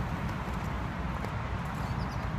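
Low wind rumble and handling noise on a phone microphone with walking footsteps, and a small songbird singing faintly in the trees.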